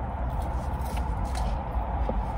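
Steady low hum inside a car cabin, with a few faint clicks and rustles.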